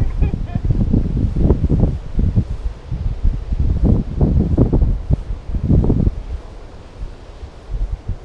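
Wind buffeting the camera microphone in irregular low rumbling gusts, easing off about six seconds in.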